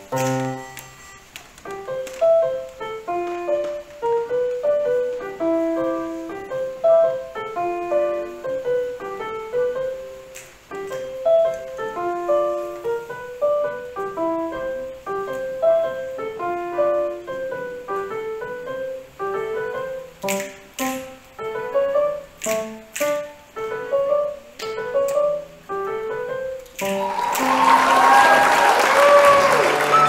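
An electronic keyboard with a piano voice plays a melody of quick, separate notes. Near the end, a loud burst of applause covers the last notes.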